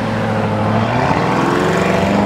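Lamborghini Urus twin-turbo V8 pulling away, its engine note climbing in pitch from about a second in as it accelerates.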